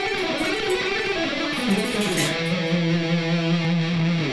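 An electric guitar (ESP LTD Deluxe) playing a quick lead phrase of fast changing notes that ends on one long held note from a little past halfway.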